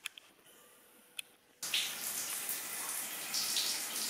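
Two faint clicks, then water running in a shower that starts suddenly about one and a half seconds in and runs steadily.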